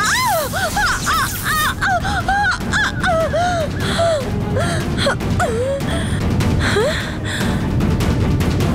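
Dramatic background score: a high wordless voice sings short rising-and-falling 'aah' phrases over a low, dense music bed with sharp percussive hits. The voice stops about seven seconds in, leaving the music bed.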